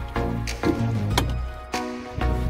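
Background music: sustained low notes under pitched chords, with new notes starting every half second or so.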